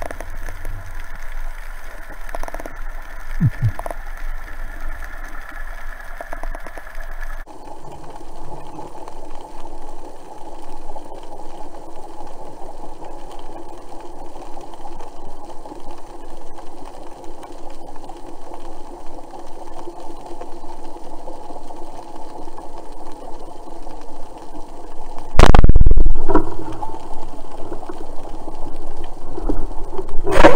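Steady underwater drone with several faint steady tones, picked up through a camera housing. About 25 seconds in, a single very loud thump as the rubber-band speargun is fired.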